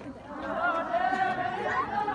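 A group of voices singing together in long, slowly wavering held notes: the song of a Tibetan Kham circle dance.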